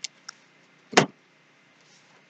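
A book being handled at a pulpit: a couple of faint clicks, then one short rustle about a second in as it is opened.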